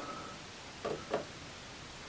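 Two faint short clicks about a quarter-second apart, as a push button on the LED panel controller board is pressed to switch the display pattern, over a steady low room hiss.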